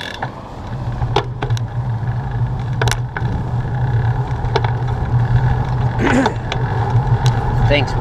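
Road bicycle rolling on pavement: wind rumbling on the handlebar camera's microphone and tyre noise, growing louder about a second in, with a few sharp clicks and rattles from the bike.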